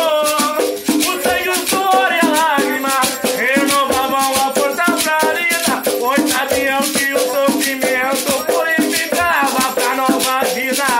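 An Umbanda devotional song (ponto) to the Pretos Velhos, sung to a hand drum played with bare hands and a beaded shaker keeping a steady, rapid rhythm.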